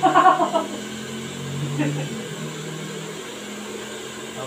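Handheld hair dryer running steadily, blowing on a client's short hair, with a short burst of voice at the very start.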